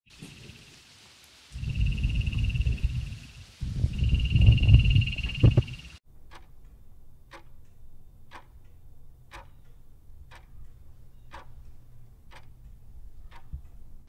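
A loud low rumbling sound with a steady high tone over it comes in two stretches, then gives way about six seconds in to a clock ticking about twice a second.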